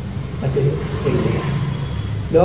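A man's voice making soft, brief sounds in a lull between sentences, over a steady low background rumble.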